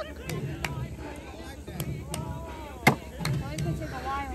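Cornhole bags hitting a wooden cornhole board: several short, sharp knocks, the loudest about three seconds in. Voices talk faintly in the background.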